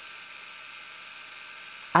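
A faint, steady whir-like background noise, even throughout, sitting mostly in the upper range with no low end.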